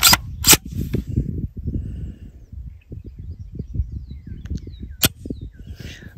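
Sharp clicks from the PSA JAKL's mil-spec trigger group being worked dry: two clicks close together at the start, then one more about five seconds in. Low handling and wind rumble fill the gaps between them.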